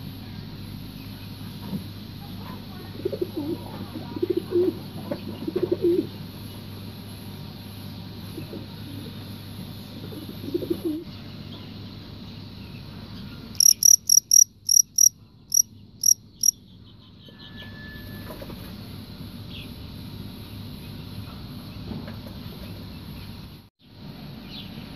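A male field cricket chirping: a run of about ten quick, high chirps over some three seconds, about halfway through. Earlier, a few low clucks from chickens.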